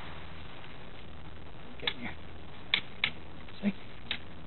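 A few light, irregular clicks from a bicycle's gear shifter and derailleur being worked, over a faint low hum.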